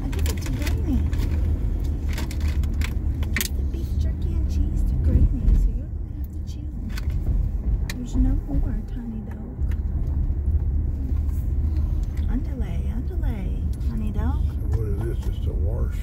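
Steady low road and engine rumble inside a moving car's cabin, with light rattling clicks in the first few seconds. A small dog whines now and then in the second half.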